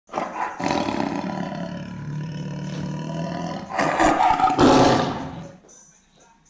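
Lion roar sound effect: a long, drawn-out roar, then a louder second roar about four seconds in that fades away just before the end.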